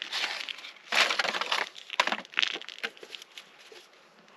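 Paper and cardboard packaging rustling and crinkling as it is handled, loudest about a second in, followed by a few light clicks and knocks that fade off.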